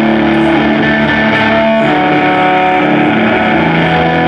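Amplified electric guitar, a semi-hollow body played live, holding chords that change about two seconds in and again near the end.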